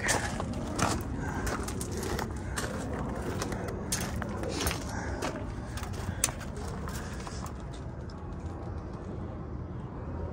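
Footsteps crunching on gravel at an irregular walking pace, thinning out over the last few seconds, over a steady low background rumble.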